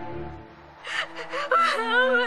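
A woman sobbing: gasping breaths about a second in, then a wavering crying wail, over soft, sad background music.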